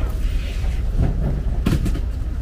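Outdoor fish-market ambience dominated by a steady low rumble, with faint voices about a second in and one brief sharp clatter near the end.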